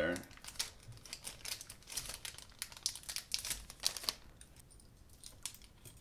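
A small clear plastic bag crinkling and rustling in the hands as it is handled and emptied. The rustling is irregular and stops about four seconds in, leaving only a few faint ticks.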